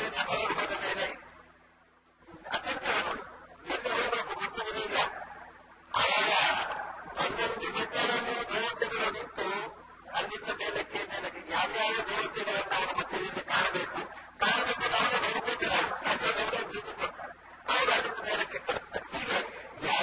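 A man's voice speaking in a discourse, in phrases of a second or two separated by brief pauses.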